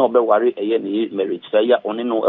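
Speech only: a voice talking on without pause, with a narrow, radio-like sound.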